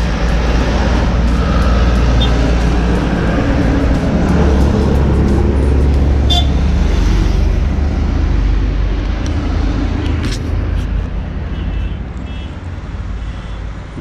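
Road traffic passing close by on a highway: trucks and cars going by with a heavy low rumble and tyre noise, loudest for the first ten seconds and then easing off.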